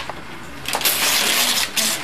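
Wrapping paper rustling and tearing as a gift is unwrapped by hand, starting a little under a second in.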